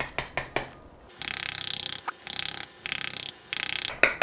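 Metal spoon tapping rapidly on the skin of a halved pomegranate to knock its seeds loose into a bowl: a few single taps at first, then four quick runs of fast taps.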